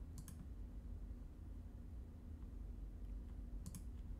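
Computer mouse clicking: a quick double click just after the start and another near the end, over a faint low hum.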